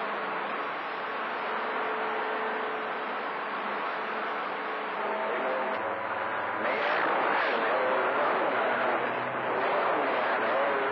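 CB radio receiver hiss on channel 28 skip, with faint steady whistling tones under it. About halfway through a stronger signal comes up with a low hum, and from about seven seconds a garbled, warbling voice rises over the static.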